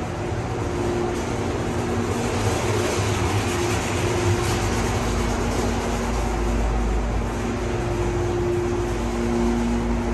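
Montgomery Kone hydraulic elevator car travelling up: a steady whir and rumble of the ride with a faint hum, the deep rumble growing stronger about halfway through.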